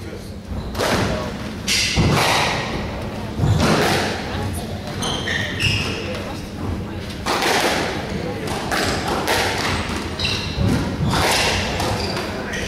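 Squash rally: the ball is struck by rackets and smacks off the court walls in a run of sharp hits every second or so. The hits echo in a large hall.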